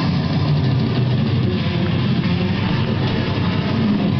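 Acoustic guitar playing a heavy-metal riff fast and without a break.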